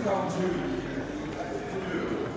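Indistinct voices of people talking in a gallery hall, none of the words clear, with one voice falling in pitch just after the start.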